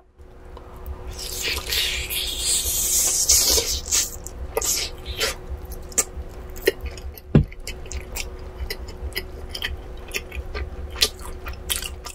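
Close-miked biting and chewing of a piece of grilled chicken coated in black pepper. A long noisy stretch of biting and tearing in the first few seconds, then wet chewing with many short sharp clicks.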